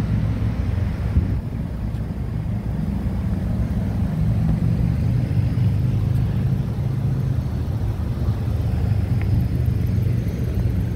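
Steady low machine hum from rooftop HVAC equipment running, even in level throughout.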